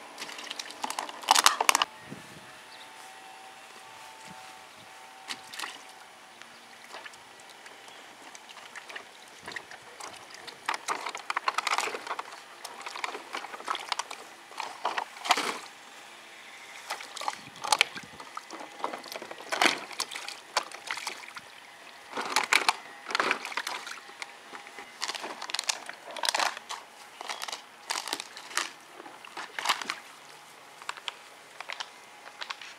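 Dogs' paws splashing and sloshing in shallow water in a plastic kiddie pool, in irregular bursts, the loudest about a second or two in as a puppy steps into the water.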